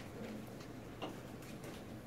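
Quiet classroom room tone: a steady low hum with a few faint, scattered clicks.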